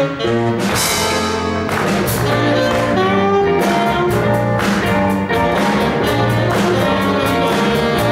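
A live jazz band playing: saxophones carry the melody over drum kit, electric guitars and keyboard.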